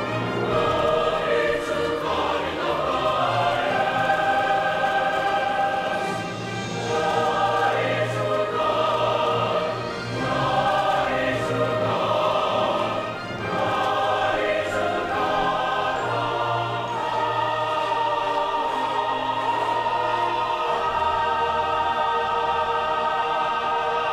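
A choir singing in long held phrases, with a brief dip between phrases every three to four seconds over a steady low accompanying note.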